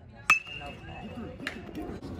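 A sharp metallic clink with a thin ringing tone that lasts about a second, then a second, softer click, over background voices.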